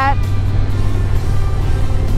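2020 Harley-Davidson Low Rider S's Milwaukee-Eight 114 V-twin running at a steady cruise through a Vance & Hines Big Radius exhaust, an even low rumble, with wind rushing past while riding.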